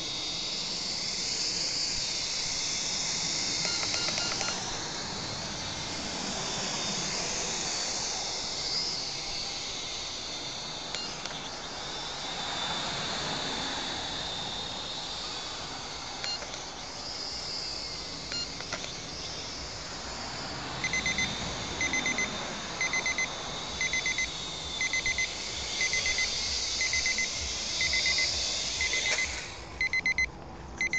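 Mini quadcopter's small motors and propellers buzzing in a high whine as it flies, the pitch shifting up and down with the throttle. About twenty seconds in, high electronic beeping starts, around two beeps a second, and goes on.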